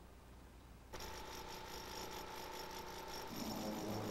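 Faint steady background noise with a thin hum, coming in about a second in after near silence; the hum drops out shortly before the end, leaving a rougher low rumble.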